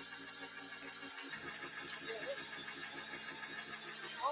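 Quiet church keyboard music holding low chords, with the chord changing about a second in, over a steady pulse of about four beats a second; a voice calls out briefly near the middle.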